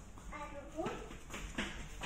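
A young child's voice, a short wordless rising call, followed by a couple of sharp taps.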